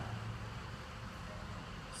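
2003 Ford F550 Super Duty's V8 turbodiesel idling, heard faint and muffled through the closed shop bay door as a steady low hum. The engine has an intermittent rough idle that the technician traces to one cylinder's faulty injector.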